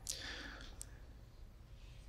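A faint short breath followed by a small mouth click about a second in, picked up by a close handheld microphone.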